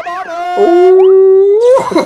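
A man's long, loud held cry, like a howl, on one steady pitch that rises near the end. It fills most of the two seconds.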